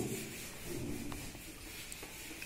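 Faint rubbing of a hand-held duster wiping marker writing off a whiteboard.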